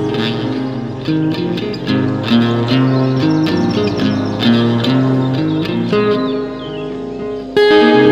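Instrumental fusion music led by a plucked guitar playing a quick melody over steady held tones. The sound thins out and quietens about six seconds in, then comes back louder just before the end.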